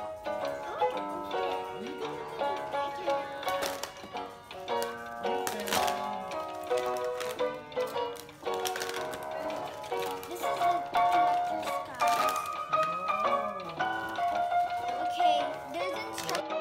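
Background music with a melody and a beat.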